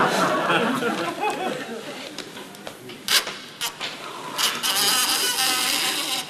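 Laughter fading out, then two sharp metallic clicks about half a second apart from a small safe's lock as it is cracked open by ear. Voices come back in near the end.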